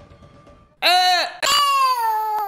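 A man's high-pitched, whining cry of disgust, mock-sobbing: a short cry that rises and falls about a second in, then a longer one that slides slowly down in pitch.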